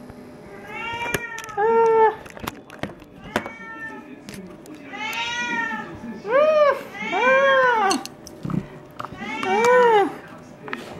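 A domestic cat meowing repeatedly: about seven calls, each rising and then falling in pitch, with small clicks in the gaps between them.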